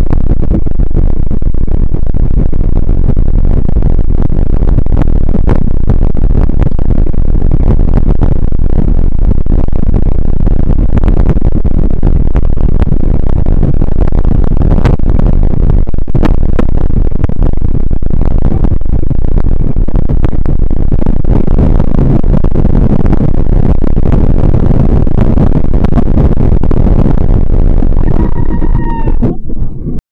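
Loud wind buffeting on the microphone and the rolling rumble of a bike moving fast over a snowy, icy trail, with many small clicks and knocks from the ride. Near the end comes a short pitched call, about a second long, that dips slightly, and then the noise drops.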